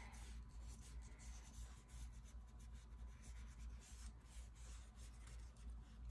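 Faint, irregular scratching of a paintbrush stroking paint onto a journal page, over a low steady hum.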